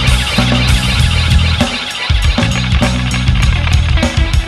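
Live rock band playing loudly: drums with cymbals struck several times a second over distorted guitar and bass.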